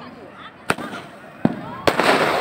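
Fireworks going off: three sharp bangs, the first about two-thirds of a second in and two more close together near the end, over faint crowd voices.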